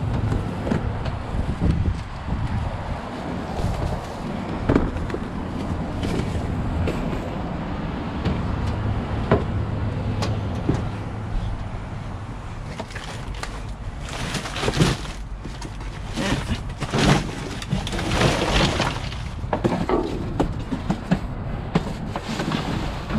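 Rummaging through a dumpster with a long hooked pole: scattered knocks and scrapes, then several bursts of rustling cardboard and plastic bags in the second half, over a steady low hum.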